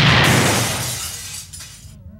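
A crash of shattering glass and scattering debris from a blast, dying away over about a second and a half.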